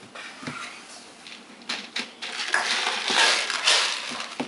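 Empty plastic yogurt tubs being handled, with a few light knocks and then a rough scraping and rubbing of plastic that is loudest in the second half.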